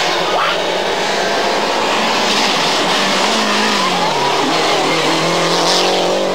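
Lancia Delta Integrale rally car's turbocharged four-cylinder engine running hard as the car approaches and passes. Its engine note drops about three to four seconds in as it goes by.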